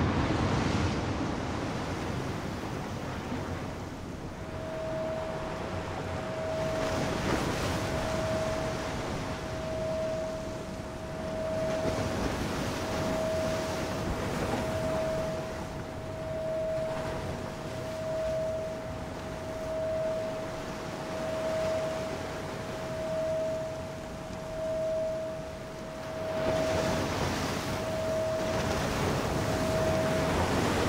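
Ocean surf breaking and washing in, its noise swelling and ebbing every couple of seconds and growing louder near the end. A single steady tone comes in about four seconds in and pulses evenly over it.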